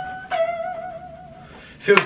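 Sterling by Music Man Axis electric guitar: two single notes picked. The second, slightly lower note comes about a third of a second in and rings for about a second before fading.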